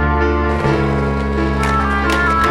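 Background music: a slow song with sustained chords, with a few sharp hits in the second half.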